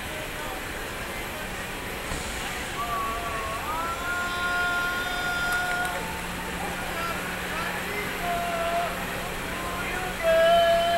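Busy outdoor street ambience: crowd murmur and city hum. A few long held pitched notes come through about three seconds in and again near the end.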